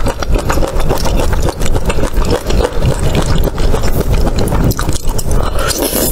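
Close-miked chewing: a steady run of small wet clicks and smacks from a mouth eating chili-oil skewers of meat-wrapped enoki mushrooms, with a slurp near the end as a bundle of enoki is drawn in.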